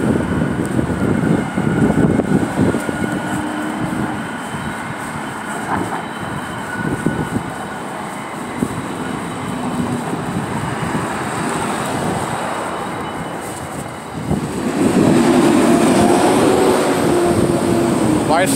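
Traffic noise with a large vehicle's engine running, loud from about three-quarters of the way through, with a steady hum.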